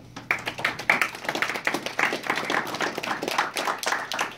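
Audience applauding: many hand claps overlapping, starting a moment in.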